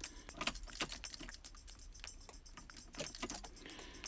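Faint, irregular light clicks and jingling rattles of small hard objects being handled.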